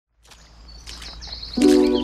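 Birdsong fading in from silence with faint outdoor ambience. About one and a half seconds in, a loud sustained music chord enters over it.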